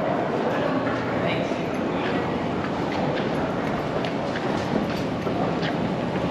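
Steady rustling and rubbing noise from a body-worn camera against a puffer jacket as the wearer walks, with indistinct voices in the background.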